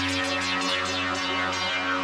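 Melodic progressive electronic dance music: steady synthesizer bass and held chords under a repeating bright synth figure.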